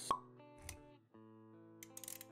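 Animated intro sound effects over music: a sharp pop just after the start, a soft low thud a little past half a second in, then sustained background-music notes with a few light clicks near the end.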